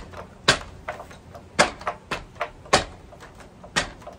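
Wrapped fists striking a wooden makiwara post in steady bone-conditioning punches: four hard knocks about a second apart, with lighter knocks in between.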